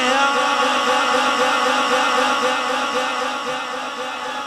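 A man's voice holding one long sung note over a public-address system, steady with a slight waver, fading gradually toward the end: the drawn-out final syllable of a devotional refrain.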